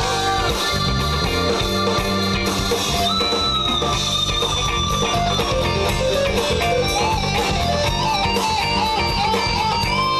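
Live band playing an instrumental passage between vocal lines: guitar to the fore over bass, drums and keyboards, at a steady level.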